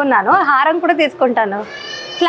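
Animated speech with swooping pitch that ends on a long, steadily held vowel.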